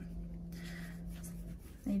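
Graphite pencil scratching softly on watercolour paper as a butterfly outline is sketched, most audible around the middle.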